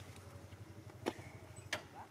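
A steady low hum like a motor running at idle, fading toward the end. Two short, sharp clicks or knocks stand out over it, about a second in and again just over half a second later.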